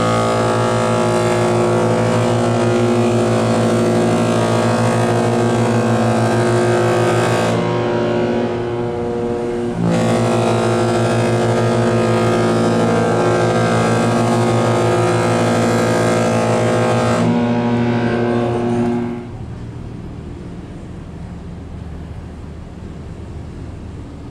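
Cruise ship's horn sounding two long, steady blasts of about seven or eight seconds each, with a short gap between them, signalling departure from port. After the second blast a quieter steady rush of wind and ship noise remains.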